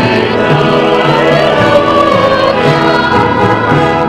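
Church choir singing the entrance hymn of a Mass, in held, sustained chords.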